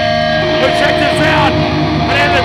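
Live band's electric guitar through stage amplifiers, ringing one steady held tone, with voices shouting over it.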